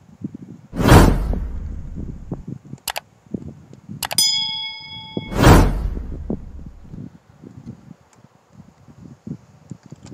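Edited-in sound effects: a loud whooshing hit about a second in, two quick clicks, then a bell-like ding that rings for about a second and a half, followed by a second loud whooshing hit.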